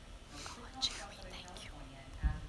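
Faint, hushed speech, partly whispered, with a brief sharp hiss about a second in.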